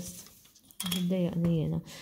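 A woman's voice speaking for about a second, after a short quiet gap.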